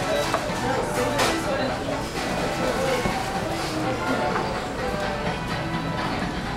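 Background music playing under voices and chatter in a busy fast food restaurant, with a sharp clack about a second in.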